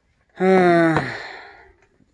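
A man's voice: one drawn-out vowel sound at a steady pitch, starting about half a second in and fading away over about a second and a half.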